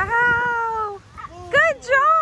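A toddler's high-pitched wordless calls: one long held call, then a few short calls that rise and fall in the second half.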